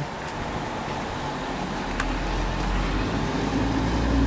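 Low street-traffic rumble of a vehicle, growing louder in the second half, with one short sharp click about halfway through.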